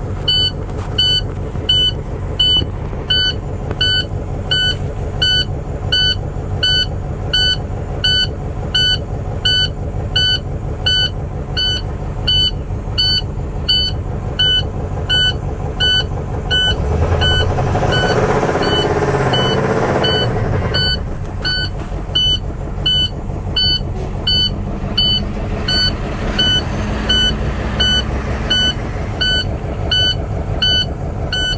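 International truck's MaxxForce diesel engine idling while a dashboard warning buzzer beeps steadily a little under twice a second. The oil-pressure gauge reads near zero with its warning light on, a sign of low oil pressure that the owner says has already ruined the engine. About 17 seconds in, the engine is revved up and falls back to idle.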